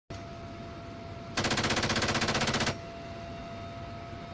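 A helicopter's door-mounted heavy machine gun firing one rapid, even burst of about a second and a half, roughly a dozen shots a second. A faint steady hum sits under it.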